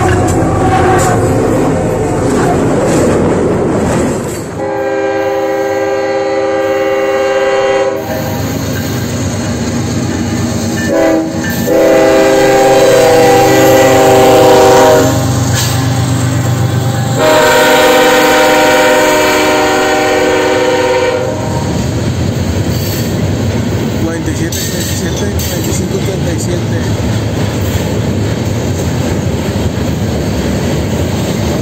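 Diesel freight locomotives of a passing KCSM train sounding their air horn: a long blast, a brief tap, then two more long blasts. The freight cars then roll by with a steady rumble and wheel clatter. The horn blasts follow a few seconds of loud rushing noise.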